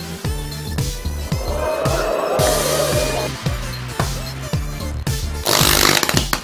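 Upbeat music with a steady drum beat and bass. A wavering tone rises and falls in the middle, and a loud hiss cuts in about half a second before the end.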